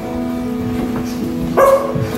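Electric guitar holding a sustained chord, with a short, high, dog-like yelp from a human voice about a second and a half in.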